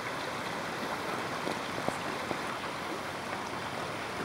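Steady rush of flowing creek water, with a few faint clicks near the middle.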